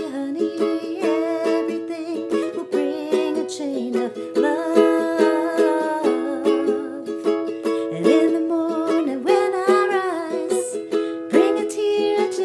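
Concert ukulele strummed in a steady rhythm, its chords ringing between strokes.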